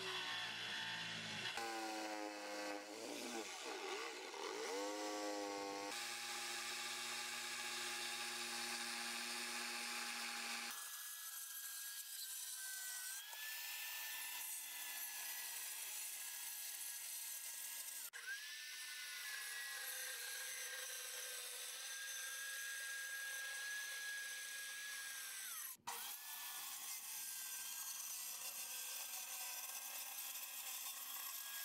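Corded circular saw running and cutting plywood, its motor whine sliding down and back up in pitch as the blade bites and frees. The sound breaks off abruptly twice and resumes.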